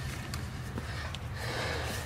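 Faint handling sounds as a cardboard template is moved about, with a couple of light clicks and a soft rustle in the last half second.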